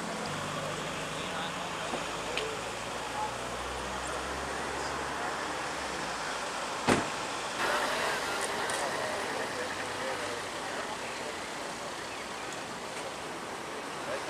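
Roadside traffic noise. A low engine hum runs for the first six seconds, a single sharp knock comes about halfway through, and then a passing vehicle brings a louder rush of tyre noise that fades away.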